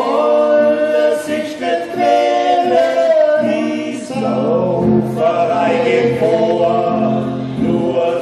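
Three men singing a song together, holding long notes.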